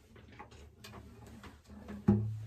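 Faint scattered clicks and light knocks from someone moving about and picking up an acoustic guitar, in an otherwise quiet small room.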